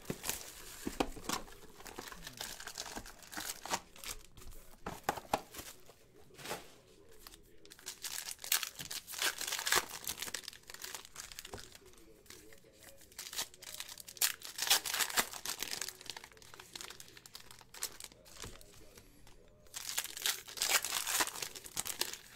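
Foil wrappers of Panini Elite Extra Edition baseball card packs crinkling and tearing open as cards are pulled out and handled, in irregular bursts of sharp crackling.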